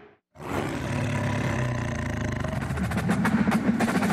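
Produced radio-show bumper sound effect: a brief cut to silence, then a dense roar that grows louder, with quick percussive hits in the second half, leading into the show's return jingle.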